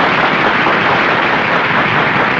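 An audience applauding, a dense and steady clatter of many hands, on an early sound-film soundtrack.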